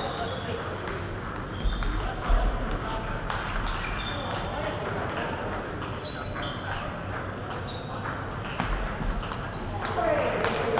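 Table tennis ball clicking as it bounces on the table and is struck by paddles, sharp little ticks scattered throughout, over the murmur of voices in a large hall. Two dull thuds come about two seconds in and again near the end.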